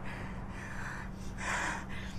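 A woman's breathy exhales, two short breaths, the second one about a second and a half in, over a steady low hum.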